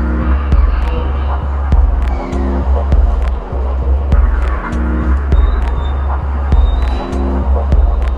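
Minimal dub techno track: a steady deep bassline under regular clicking percussion, with a short chord recurring about every two seconds.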